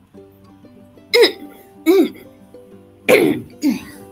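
A person coughing four times in two pairs, each cough a sharp burst with a falling voiced tail, over a karaoke backing track; typical of a throat with phlegm stuck in it.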